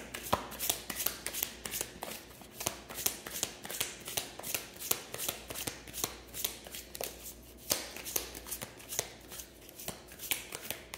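A tarot deck being shuffled by hand: a quick, irregular run of card flicks and slaps, several a second.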